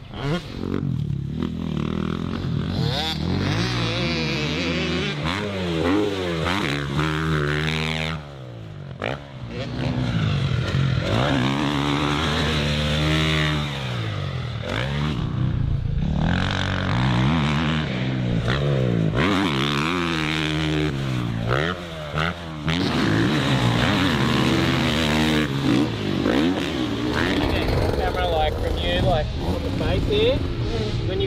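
Motocross dirt bike engines being ridden hard, the pitch climbing and dropping again and again with throttle and gear changes. A short drop in level about eight seconds in.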